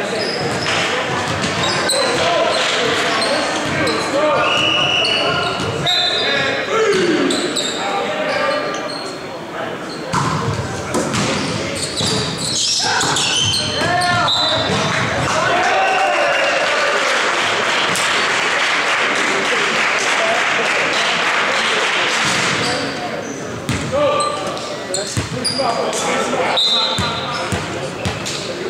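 Indoor volleyball play: players shouting to one another and the ball being struck and bouncing in sharp smacks, all echoing in a large gymnasium. A denser stretch of shouting or cheering comes about two-thirds of the way in.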